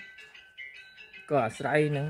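Soft background music, a slow melody of thin high notes. About two-thirds of the way in, a man's speaking voice comes in over it.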